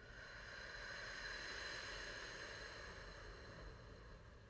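A person breathing out slowly through parted lips during a deep-breathing exercise: a soft, breathy rush that swells over about two seconds and then fades.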